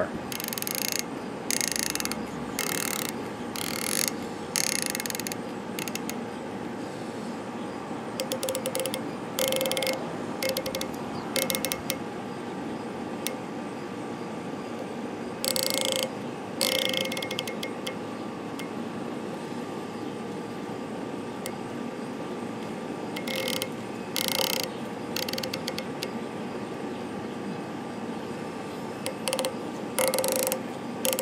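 Turret on a Tangent Theta 5-25 riflescope being dialed, giving runs of crisp, positive detent clicks in several short bursts with pauses between.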